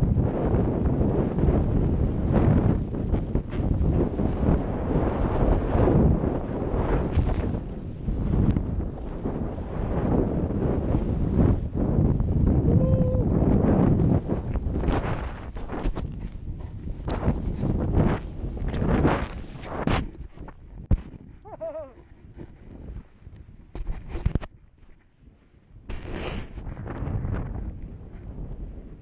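Wind rushing over an action camera's microphone and a snowboard sliding through deep powder snow. The noise is loud and steady for the first half, then fades and breaks up, with scattered knocks.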